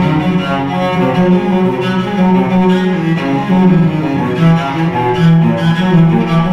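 Solo cello strung with gut strings and played with a baroque bow, tuned low to A=415, playing a steady stream of quick bowed notes over lower bass notes.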